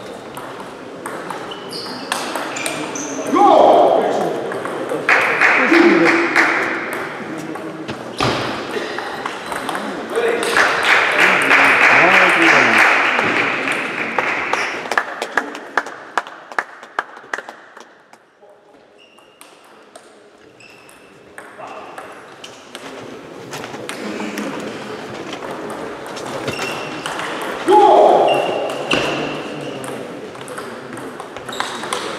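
Table tennis ball clicking sharply off rackets and the table during doubles rallies, with voices in the hall and a few loud shouts from the players.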